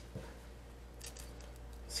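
Faint small clicks and rubbing of fingers working a laptop's battery cable connector, with a few short sharp ticks about a second in.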